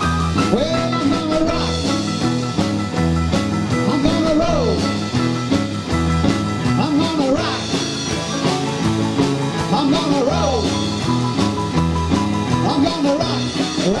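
Rockabilly band playing live in an instrumental break: a lead line with bent, sliding notes over a walking bass on hollow-body electric bass, a steady drum-kit beat, electric guitar and keyboard.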